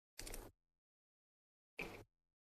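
Near silence, broken by two short, faint rustles: one just after the start and one near the end.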